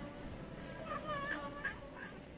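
A cat meowing: a short, wavering call about a second in, followed by a brief second call near the end.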